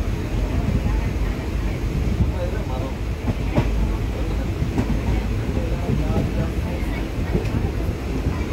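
Steady low rumble of a moving train heard from on board, with a few faint clicks and distant voices in the background.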